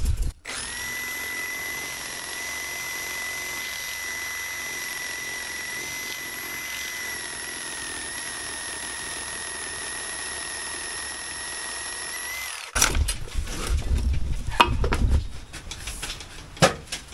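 Milwaukee FUEL cordless reciprocating saw cutting through a lightweight concrete block, its motor giving a steady high whine. The saw stops about twelve and a half seconds in with a slight dip in pitch, and irregular knocks and scrapes follow.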